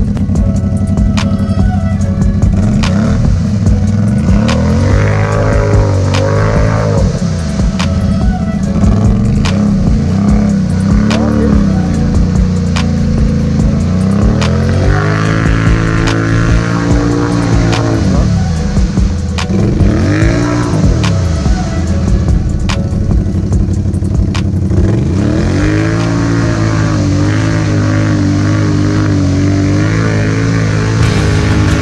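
Can-Am 570 ATV's V-twin engine revving up and down again and again as the tires churn through deep mud, with several rising-and-falling revs a few seconds apart.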